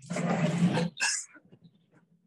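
Sliding lecture-hall blackboard panel pulled down along its track: a rough rumble for just under a second, then a short clack about a second in as it stops.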